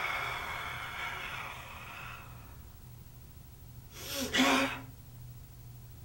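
Forceful Sanchin kata breathing by a karateka under full-body tension. A long, hissing exhalation fades out about two seconds in. About four seconds in comes a second, short forceful breath with a low grunt.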